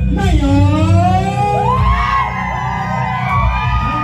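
A male vocalist singing through a microphone and PA: long, wavering, sliding held notes that seem to overlap one another, over the band's keyboard backing and a steady low bass.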